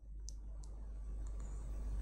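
Two short, light clicks about a third of a second apart over a steady low hum.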